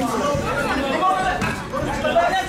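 Many voices talking and calling out over one another: crowd chatter from spectators around a kickboxing ring.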